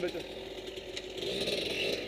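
A vehicle engine running, getting louder about a second in as the vehicle moves off.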